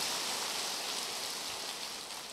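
Large audience applauding, the clapping slowly tapering off toward the end.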